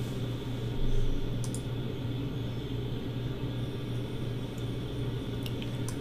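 Room tone: a steady low hum with a few faint clicks from computer mouse or keyboard use while a web browser is worked.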